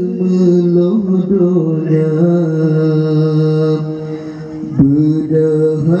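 A man singing an Acehnese qasidah into a microphone, amplified over loudspeakers, in long drawn-out notes. He holds one low note for about three seconds, breaks off briefly, then rises in pitch near the end.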